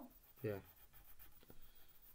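Faint scratching of a pencil on paper while drawing, with a light tap about one and a half seconds in.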